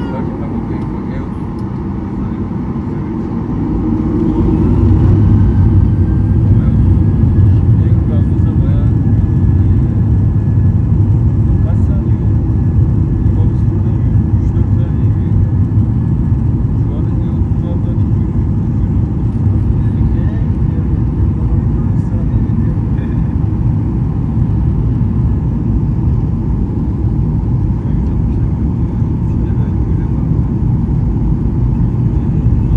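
A jet airliner's turbofan engines, heard from inside the cabin, spooling up for takeoff a few seconds in with a rising whine. They then hold a steady loud rumble as the aircraft accelerates down the runway.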